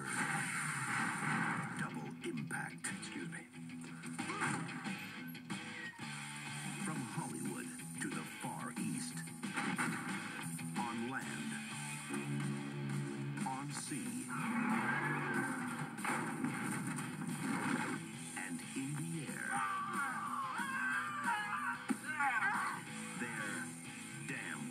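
Action-movie trailer soundtrack played from a VHS tape through a television's speaker: a dramatic music score running throughout, with scattered sharp hits and brief voices mixed in.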